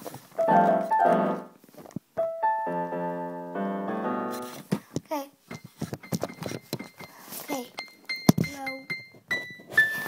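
Electric keyboard played: a couple of short chords, then a chord held for about two seconds, then single high notes struck one at a time with light clicks in between.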